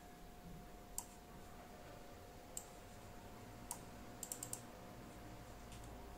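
Faint clicks of numeric-keypad keys being pressed: single presses a second or so apart, then a quick run of four, over a faint steady tone.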